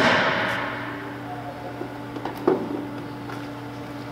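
Reepack ReeTray 30 semi-automatic tray sealer at the end of its sealing cycle: a sharp clack as the sealing head releases, then a hiss of air fading away over about a second. A steady hum runs underneath, and a single knock comes about two and a half seconds in as the tray drawer is handled.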